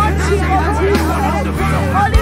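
Slow worship music with sustained low bass notes that change pitch now and then, under many voices praying aloud at once.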